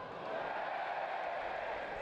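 Football stadium crowd noise: a steady murmur of many voices, swelling a little about half a second in.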